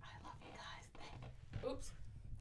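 A young woman whispering softly, close to the microphone.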